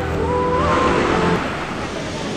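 Floodwater of the swollen Teesta River rushing past as a loud, steady roar. A few held tones sound over it and stop about a second and a half in.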